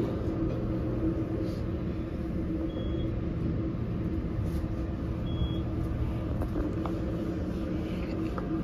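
Elevator car travelling up its shaft behind closed doors: a steady low hum and rumble. Two short, faint high beeps come about three and five and a half seconds in.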